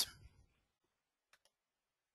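Near silence with a few faint, quick clicks about a second and a half in, from the presenter's computer as the slide is advanced to the next one.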